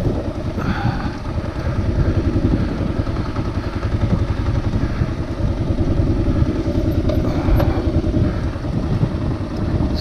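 Adventure motorcycle's engine running steadily at low speed, a dense fast pulse of firing strokes.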